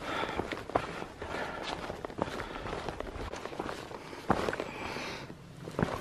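A hiker's footsteps on a dirt trail covered in dry leaves, at a walking pace, with a few sharper knocks.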